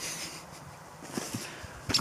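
A quiet pause filled by a soft breath that fades within the first half second, then a few faint rustles or taps about a second in.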